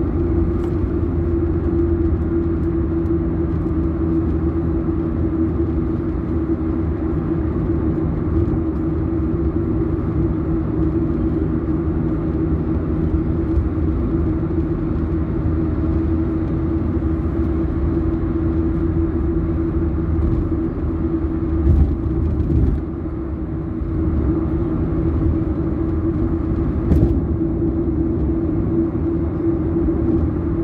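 Steady road, tyre and engine noise heard inside a car cruising on a highway at about 100 km/h, with a constant low hum under the rumble. A couple of brief sharp knocks come in the last third.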